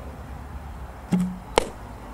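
A softball bat striking a ball with a sharp crack about a second and a half in, preceded about half a second earlier by a duller knock with a short low hum.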